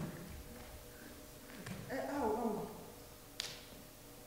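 A wordless human vocal sound, a moan that rises and then falls in pitch, about halfway through, followed by one sharp click near the end.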